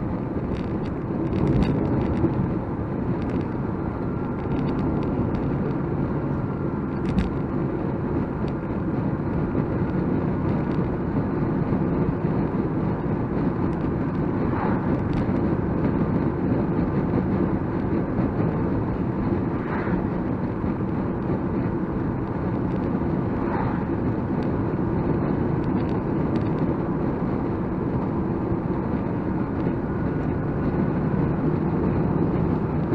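Nissan Micra K12 driving at steady speed, heard from inside the cabin: a continuous drone of engine and tyre noise, with an occasional light knock.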